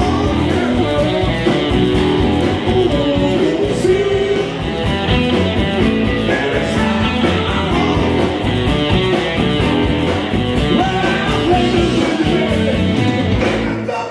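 Live blues-rock band playing: a male vocalist singing over electric guitars, bass guitar and a drum kit.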